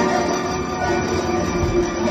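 Guzheng solo in a loud, sustained passage, many strings ringing together without a break.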